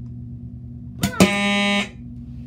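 Fire alarm horn on the alarm board giving one short loud buzz, about half a second long, that starts with a couple of clicks and cuts off suddenly, over a steady low hum.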